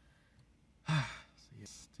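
A man's short voiced sigh about a second in, a breathy exhale whose pitch falls, followed by a quieter breath.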